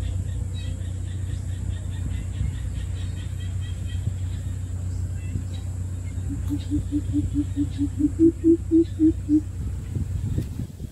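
Greater coucal (bìm bịp) giving its deep hooting call, a run of about thirteen low hoots a few to the second, rising a little in pitch and loudness near the end. A steady low rumble runs underneath, and faint high chirping comes from small birds in the first half.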